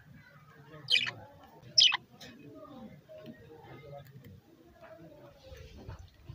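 Two short, sharp budgerigar chirps about a second apart, each falling in pitch, over a faint background murmur.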